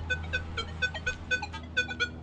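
Nokta Legend metal detector in Multi 2 mode sounding short, repeated beeping target tones, about four a second, as its coil passes over a small thin gold ring: a good repeatable signal on the ring.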